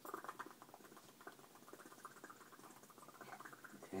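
Small hands pressing and scrabbling at a man's face and mouth, giving a soft, fast crackle of tiny clicks and smacks.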